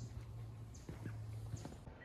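Quiet background with a steady low hum and a few soft knocks about a second in.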